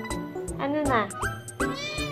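Persian cat meowing in arching calls, over background music with a steady beat.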